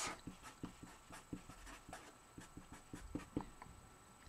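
Black felt-tip marker writing capital letters on paper: faint, quick, irregular scratching strokes.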